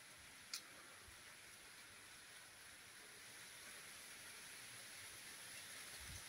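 Near silence: faint steady background hiss, with one brief click about half a second in.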